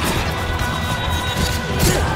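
Orchestral film score with loud crashing impacts over sustained tones, one at the start and another near the end.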